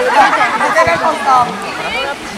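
Several young people's voices chattering and calling out over one another during an outdoor ball game.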